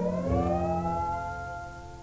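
Electric steel guitar slides up to a held final note over guitar and bass, the last chord of the song fading away.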